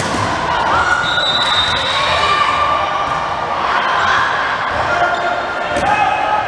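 Indoor volleyball rally: the ball is struck and hits hands and arms with sharp knocks, and sneakers move on the gym floor, while players and spectators call out.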